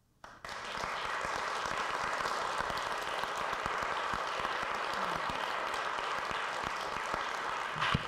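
Audience applauding: it starts suddenly about half a second in and keeps up steadily.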